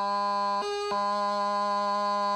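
Bagpipe practice chanter sounding a steady held note, broken about half a second in by a short jump to a higher note (the G gracenote, made by lifting the left index finger off its hole and snapping it back down) before the first note returns and holds.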